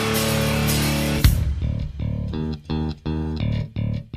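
Rock music with electric guitar and bass guitar. It starts full and sustained, breaks on a sharp hit about a second in, then turns to short, choppy chord stabs with brief silences between them.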